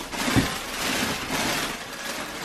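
Clear plastic packaging crinkling as a garment is pulled out of it, with a short low thump about half a second in.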